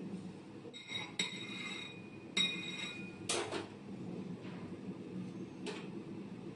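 A metal spatula scraping and clinking against a steel cake turntable while smoothing whipped cream frosting. There are two ringing metallic scrapes about one and two and a half seconds in, then a sharp clink and a lighter one near the end.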